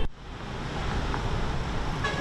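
Steady rushing outdoor background noise with no distinct events. It starts abruptly right after a cut and grows gradually louder.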